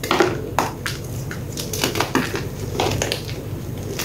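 Gym chalk block being crushed between two hands, breaking apart in an irregular string of crisp crunches and cracks as it crumbles into chunks.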